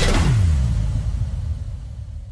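A deep rumbling boom that falls in pitch and fades out, a cinematic transition effect closing the soundtrack's music.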